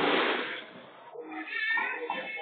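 Rumble of a bowling ball rolling down the lane, fading away over the first second. It is followed by a quieter, high, wavering pitched sound lasting about a second.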